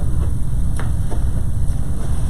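Steady low rumble of room noise, with a couple of faint clicks about a second in.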